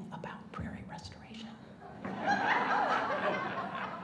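An audience laughing, breaking out about halfway through.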